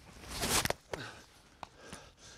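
A hurley swung at a sliotar: a short rush of air that ends in a sharp crack of the strike just under a second in, then a faint click.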